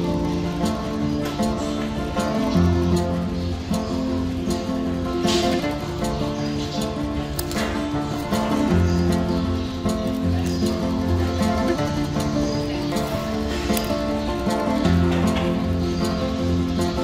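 Background instrumental music, its sustained notes changing in steps like a chord progression.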